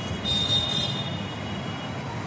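Steady background noise with a thin, high, steady whine, heard in a pause between spoken phrases.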